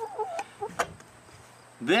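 Chickens clucking in short wavering calls in the first part, with a sharp click a little under a second in.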